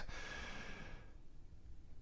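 A faint breath near a microphone, a soft airy hiss that fades out over about the first second and leaves near silence.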